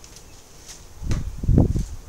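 Low, muffled thuds of handling noise about a second in, lasting under a second, as things are moved about close to the microphone.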